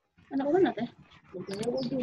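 A child's voice over a video call, drawn out and sounding out words while reading aloud, with a few short sharp clicks.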